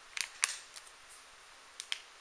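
A few small, sharp clicks: two about a quarter of a second apart near the start, the second the loudest, and another close pair near the end.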